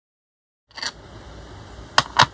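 Silence at first, then quiet handling noise from small craft jars being moved about on a cutting mat: a brief knock just under a second in and a sharp click just before the end.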